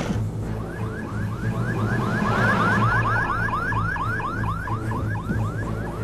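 Ambulance siren in a fast yelp, its pitch sweeping up and down several times a second. It swells about two seconds in and fades toward the end, over background music.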